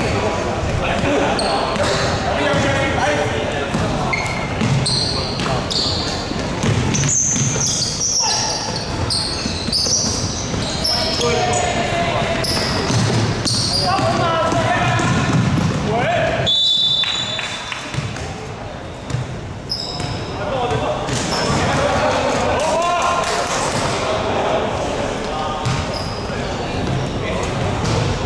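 A basketball game on a hardwood court in a large indoor hall: the ball bouncing, sneakers squeaking on the floor and players calling out. A short, shrill referee's whistle sounds about two-thirds of the way through, and play quietens briefly after it.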